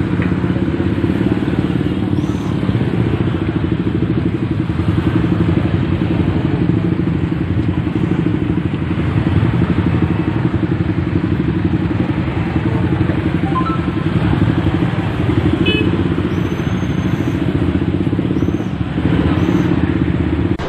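Small motorcycle engines running in slow, crowded traffic. The nearest bike sits right by the microphone and gives a loud, steady rumble.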